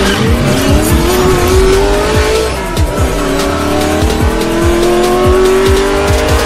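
Intro music with a heavy electronic beat under a car engine sound effect accelerating, its pitch climbing, dipping once about two and a half seconds in as at a gear change, then climbing again.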